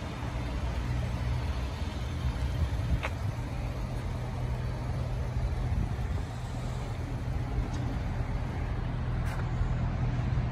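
A car engine idling: a steady low hum under even outdoor background noise, with a faint click about three seconds in.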